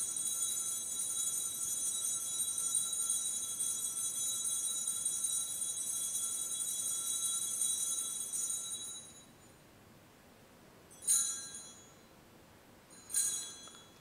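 Altar bells rung at the elevation of the consecrated host: one long ring that lasts about nine seconds and fades, then two short rings near the end.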